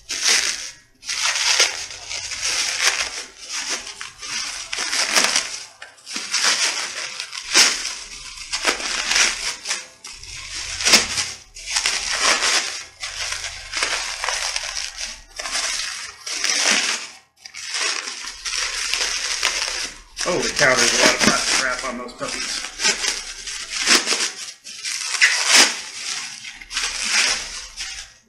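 Clear plastic wrapping being pulled and crumpled by hand off metal parts, a continuous run of rustling in quick, uneven bursts with brief pauses.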